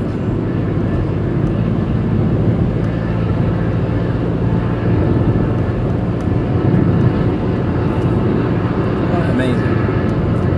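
Car engine and tyre noise heard from inside the cabin while driving steadily on a wet road: a constant low drone with a wash of road noise over it.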